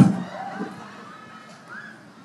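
A man's preaching voice breaks off and its last word rings away in a large hall's reverberation. Then comes a faint lull with only soft, steady background sound, likely low background music.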